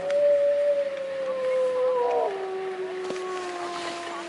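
A dog howling in long, drawn-out notes that slide slowly downward, then drop to a lower held note about halfway through.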